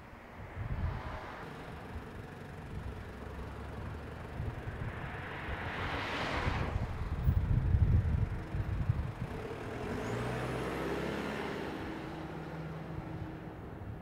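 An SUV, a Toyota Hilux Surf, drives past close by, its tyre and engine noise swelling to a peak about seven to eight seconds in and then fading. A steadier engine hum from traffic follows.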